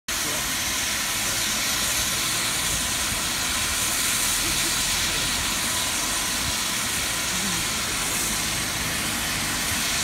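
Steam locomotive, the GWR Castle class 4-6-0 No. 5043 Earl of Mount Edgcumbe, standing with its safety valves blowing off: a loud, steady hiss of escaping steam with no exhaust beats. Blowing off is the sign of a boiler at full working pressure.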